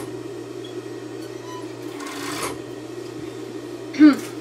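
Industrial overlock (serger) machine running with a steady hum. A brief rustle comes about two seconds in as the fabric is handled.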